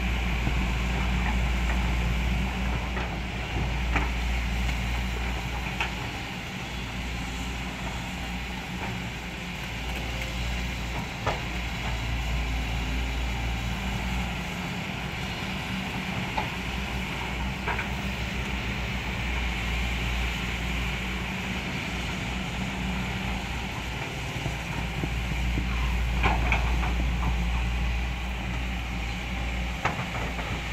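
Diesel engines of several crawler excavators running under load as they dig and swing in wet mud, a steady low drone. A few sharp knocks come through now and then, the loudest near the end.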